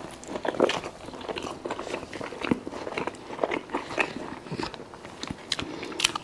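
Close-miked biting and chewing of a club gyros sandwich, with many short, irregular crunches and mouth clicks.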